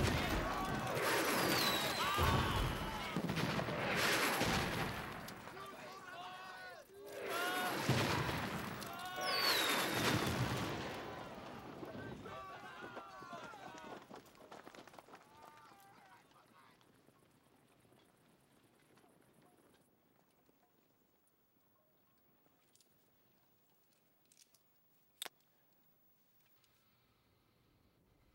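Battle soundtrack: rocket shells exploding amid gunfire, with men shouting and screaming. The din fades away after about eleven seconds into quiet, with a few faint clicks and one sharp click near the end.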